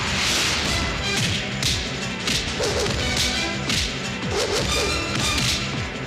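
Film fight sound effects: a rapid run of punch and kick hits with swishing whooshes, roughly one every half second, over a background music score.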